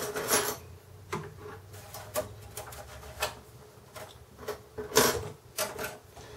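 Light metallic clicks and taps from the metal expansion-slot blanking plates at the back of a Dell Optiplex GX270 case being handled and slid back into place: about seven separate clicks, the loudest about five seconds in.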